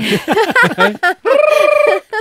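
Several people laughing. The laughter runs into a high-pitched held note with a fast quiver that lasts most of the last second.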